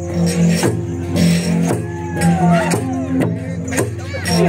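Bahnar gong ensemble playing: bronze bossed and flat gongs struck with padded mallets in a steady, interlocking rhythm, their low tones ringing on between strikes.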